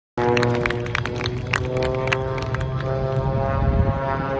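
Biplane's piston engine and propeller droning overhead in a steady, pitched drone, with irregular sharp clicks over the first two and a half seconds.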